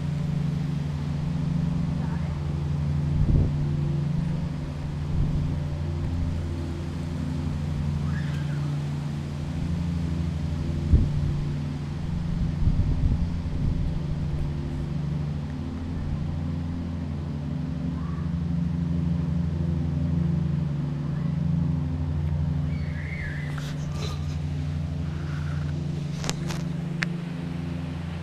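A steady low motor hum, like an engine running at idle, with a few soft knocks near the microphone.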